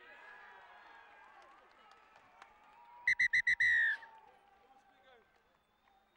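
Referee's whistle blown as four quick pips and then one longer blast, about three seconds in: the full-time whistle ending the rugby match. Before it, voices and calls from the players on the pitch.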